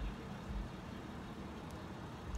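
Low, steady rumble of a car idling in a drive-thru line, heard from inside the cabin.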